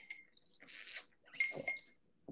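A drinking glass clinks as it is raised to drink from, once at the start and again about a second and a half in with a brief ring, with a sip in between.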